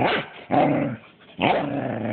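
Corgi giving growling barks, three drawn-out growl-barks in a row, the last one the longest.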